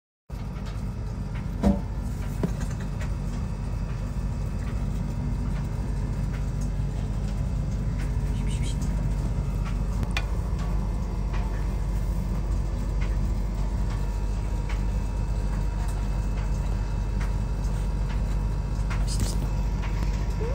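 A steady low mechanical hum and rumble with a faint thin high tone, broken by a few short clicks, the sharpest about two seconds in.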